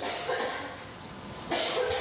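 A man coughing briefly, about one and a half seconds in.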